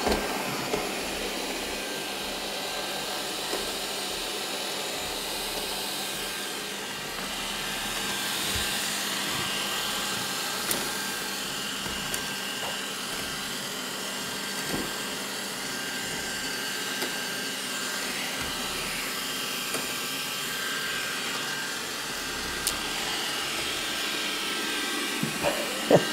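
Robot vacuum cleaner running, with a steady whir from its fan and brushes. A few faint clicks come through now and then.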